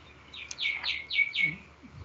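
A bird calling in the background: a quick run of about five high chirps, each sliding down in pitch, over about a second.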